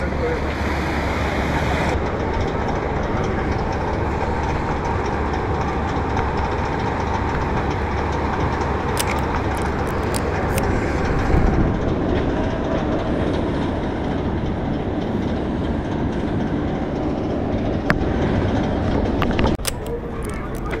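Loud, steady outdoor rumble with no clear voices. A quick run of light, sharp clicks comes about nine to ten and a half seconds in, and again near the end.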